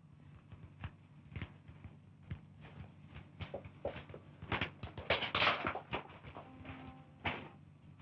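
Scuffling of a struggle on the floor: irregular knocks, scrapes and bumps of bodies and furniture, with a louder, denser rush of noise about five seconds in.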